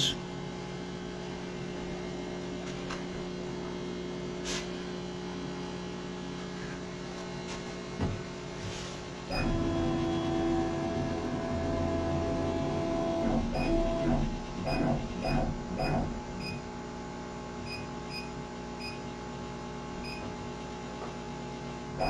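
Steady electrical hum of the powered-up CO2 laser cutter. From about nine seconds in, a louder, wavering mechanical whirr with a held tone joins it for about seven seconds, then stops.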